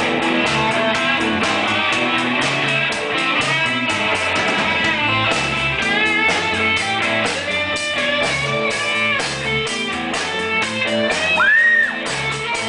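Live rock band with electric guitars, bass guitar and drums playing an instrumental break: a lead electric guitar plays bending notes over a steady drum beat and bass line. Near the end a long bent note rises and is held, the loudest moment.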